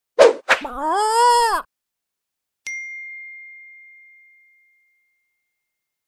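Logo sound effect: two sharp strikes, then a short rooster crow that rises and falls in pitch. About a second later comes a single bright ding that rings out and fades over about two seconds.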